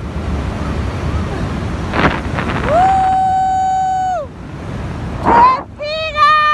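Wind rushing over the microphone of a tandem paraglider in a fast descent, with a sharp gust about two seconds in. A long steady high note sounds from about three to four seconds in, and a short rising note comes near the end.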